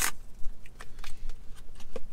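Paperboard pie box being pulled open by its tear tabs: a scatter of small crackles and ticks as the cardboard tears and is handled.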